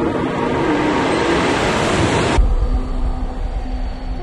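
Soundtrack sound design: a loud, dense noise that cuts off suddenly about two and a half seconds in. It leaves a low rumble with a few held low tones.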